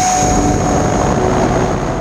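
Electric ducted fan (Wemotec Mini Fan EVO with HET 2W20 brushless motor) of an FT Viggen foam model jet running at high power during the climb-out after a hand launch: a steady high-pitched whine over loud rushing air. It is heard from the onboard camera, so airflow noise is strong.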